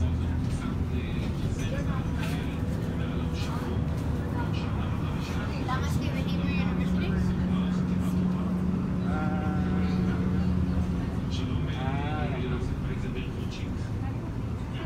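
City bus engine running steadily as the bus drives, heard from inside the passenger cabin, with its hum strongest through the middle. Passengers' voices are heard over it now and then.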